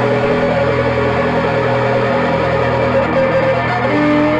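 Electric guitars holding a sustained, droning wash of notes through effects pedals, without a drum beat, over a steady low tone.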